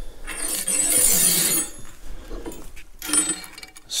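Steel lock washer and nut scraping and clinking as they are slid onto a steel shaft: a scraping stretch in the first second and a half, then a few light clicks.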